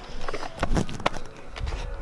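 A few short knocks and a low rumble near the end from the camera being carried and brushing against clothing, with footsteps.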